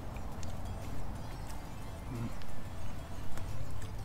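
Steady low outdoor rumble with a few faint scattered clicks, and a short hum from a person about halfway through.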